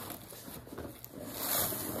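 Handbag being handled and packed: rustling and scraping of the bag and its contents, with a louder rush about a second and a half in.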